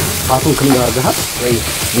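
Food frying in a pan on a gas stove, a steady sizzle.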